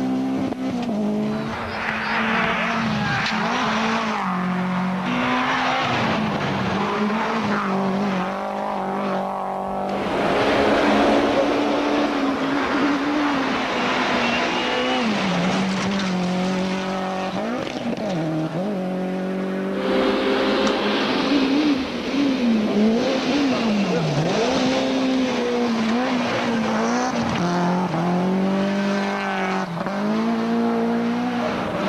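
Toyota Celica GT4 ST165 rally car's turbocharged four-cylinder engine at full stage pace, its pitch rising and dropping again and again with throttle and gear changes. The sound changes abruptly about a third and two thirds of the way through as one stage clip cuts to the next.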